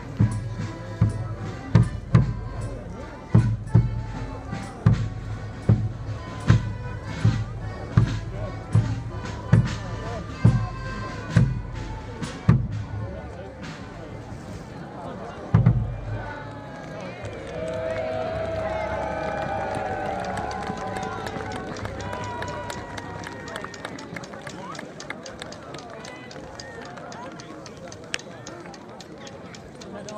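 Folk band of melodeons and accordions playing a dance tune over a steady bass-drum beat, which stops about halfway through, followed a few seconds later by a single last heavy drum stroke. The crowd then cheers and applauds, fading toward the end.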